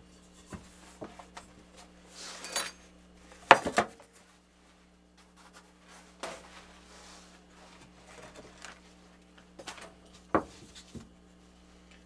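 Pie-making handling sounds: a metal pie pan knocking against the counter, loudest about three and a half seconds in, with rustling as the baking mat is flipped and peeled off the rolled pie dough, and a few small clicks later on.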